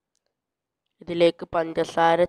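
Silence for about a second, then a person's voice talking.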